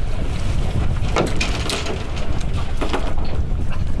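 Wind buffeting the microphone on an open boat at sea, a steady low rumble, with the sea washing against the hull. A few brief sharp knocks or splashes stand out at about one, one and a half, and three seconds in.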